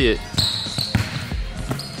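Basketball being dribbled on a hardwood gym floor: a run of bounces about two a second.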